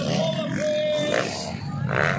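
Dirt bike engines revving as motocross bikes race past on a dirt track, the pitch swinging up and down with the throttle and holding steady for a moment around the middle.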